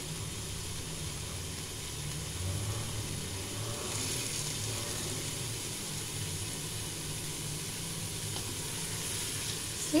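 Onion, ginger-garlic and spice masala sizzling in oil in a stainless steel pan while a spatula stirs and scrapes it, over a steady low hum. The oil has separated from the mixture, the sign that the gravy base is fried through.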